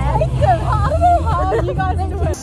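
Two women's voices chatting and laughing over a steady low rumble.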